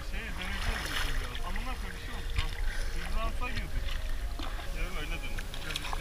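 Double-bladed kayak paddles dipping into calm sea water with light splashes, over a steady low wind rumble on the microphone, with quiet voices talking faintly.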